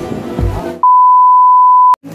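Background music, cut off less than a second in by a loud, steady electronic beep of a single pitch that lasts about a second and stops suddenly: a censor-style bleep edited into the soundtrack.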